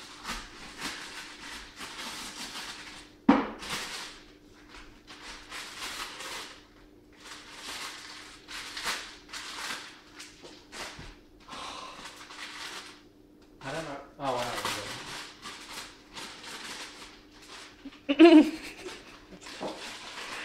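Newspaper rustling, crinkling and tearing in irregular bursts as items wrapped in it are unwrapped, with a sharp knock about three seconds in. A faint steady hum runs underneath, and a laugh comes near the end.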